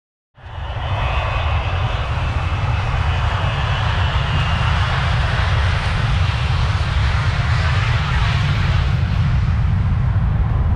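Loud, steady jet-engine noise from a business jet at an airfield, mixed with wind buffeting the microphone. The sound cuts in abruptly just after the start.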